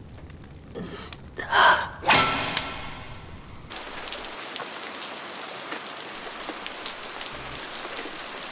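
Steady rain falling on a tiled roof, an even hiss, beginning about four seconds in. Before it come a few loud, sudden sounds, the loudest about two seconds in.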